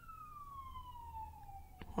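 Faint, distant emergency-vehicle siren: one slow wail falling steadily in pitch.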